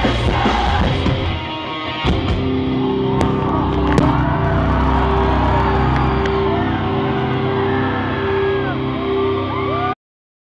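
Heavy rock band playing live at high volume, with shouted vocals for the first couple of seconds, then held, sustained notes over the bass and drums. Crowd yells and whoops ride over the music. The sound cuts off suddenly at the end.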